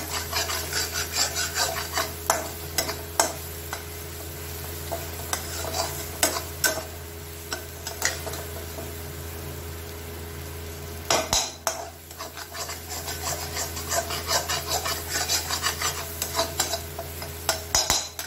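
Metal spatula scraping and stirring onion-garlic paste as it fries in an aluminium kadhai, the paste being cooked until it changes colour. Quick scraping strokes come in runs at the start and again over the last several seconds, with a quieter stretch and a few knocks on the pan in between, over a steady low hum.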